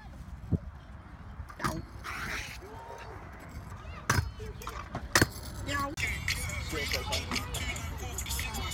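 Stunt scooter wheels rolling over concrete with a steady low rumble, and a few sharp clacks of the scooter striking the ground.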